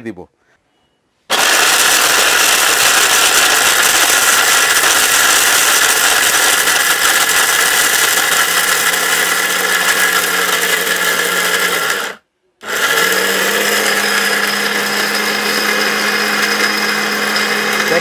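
Maharaja mixer grinder motor running at full speed with its small stainless-steel jar fitted, starting about a second in. It runs steadily for about eleven seconds, cuts off for half a second, then starts again and keeps running.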